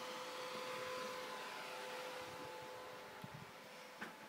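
Faint steady hiss with a thin, steady hum under it, and a few soft bumps about three seconds in.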